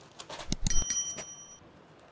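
A few sharp clicks, then a short bright bell ding that rings out for about a second: the sound effect of an on-screen subscribe button and notification bell. Soft knocks and rustles of sarees being laid down come around the ding.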